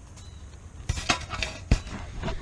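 Wire cage trap clinking and rattling as it is handled. The sound begins about a second in, with a couple of sharp knocks.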